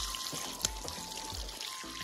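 Water running steadily from a hose pipe and splashing over a bunch of leafy greens as they are rinsed by hand.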